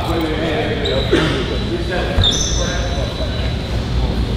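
Gym ambience during a basketball game: voices echoing in the hall over the thud of a basketball being bounced, with two brief high squeaks, one about a second in and one just past two seconds.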